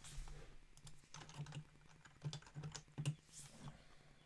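Typing on a computer keyboard: faint, irregular runs of keystrokes with short pauses between them.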